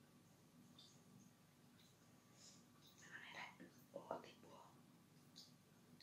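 Faint eating sounds: soft chewing and small mouth clicks, with a brief soft vocal sound about three to four and a half seconds in.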